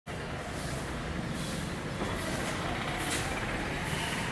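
Steady background noise: a low rumble under a hiss that swells and fades about once a second.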